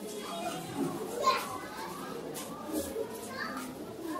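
Many children talking at once, an overlapping chatter with no single voice standing out.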